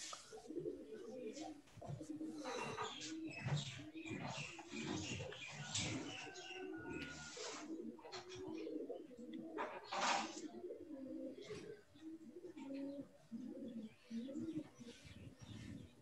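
Pigeons cooing in the background, repeated low soft calls throughout, with several brief noisy sounds in between, the loudest about ten seconds in.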